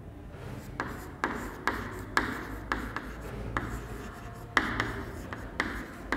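Chalk writing on a blackboard: a string of short scratchy strokes and taps, about two a second, as letters are written.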